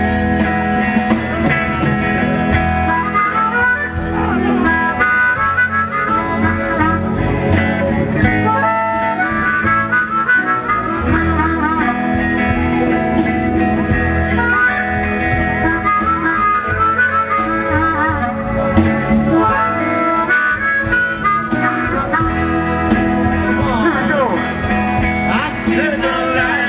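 Harmonica (blues harp) playing an instrumental solo, its melody wavering and bending, over a live band with guitars and drums.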